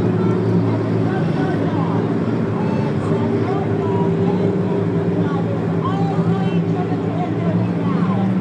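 A pack of Six Shooters compact race cars running together at pace speed: a steady, even drone of several engines, with no revving or sudden changes.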